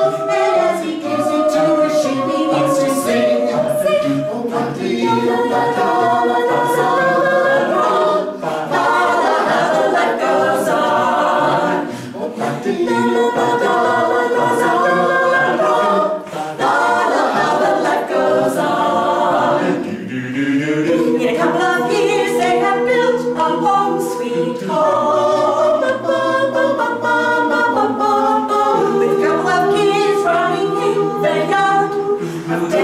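A seven-voice mixed a cappella group, four women and three men, singing unaccompanied in several-part harmony, with held chords and short breaks between phrases.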